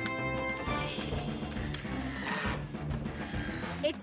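Cartoon background music, with a cordless power drill whirring for about two seconds starting about a second in, as a brace is screwed to a tree trunk.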